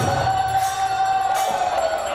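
Devotional music of khol drums and other percussion, with one long held note that wavers slightly over the beat.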